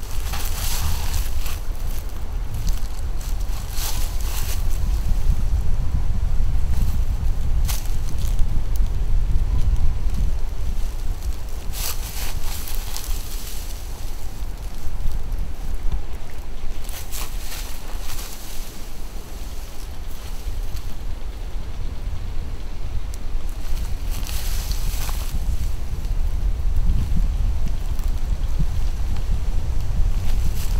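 Wind buffeting the microphone, a steady low rumble throughout, with several short rustling bursts scattered through it.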